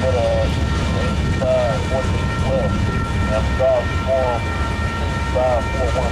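Freight train of covered hopper cars rolling past at slow speed: a steady low rumble from the wheels, with several steady high tones above it and short chirping sounds coming and going throughout.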